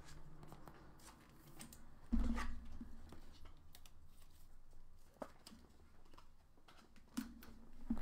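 Faint rustling and scattered clicks of a trading-card box and its packs being handled and opened, with a dull thump about two seconds in.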